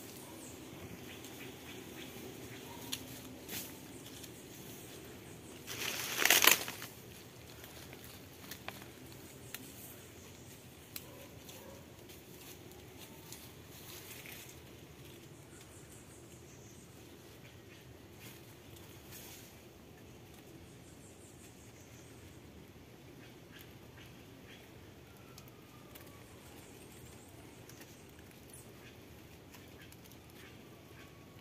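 Dry banana leaf litter rustling and crackling over a quiet outdoor background, with a short loud crunch about six seconds in and a few lighter crackles scattered through the first half.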